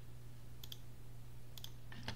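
Two quick double clicks of a computer mouse, one a little over half a second in and one about a second and a half in, over a steady low hum.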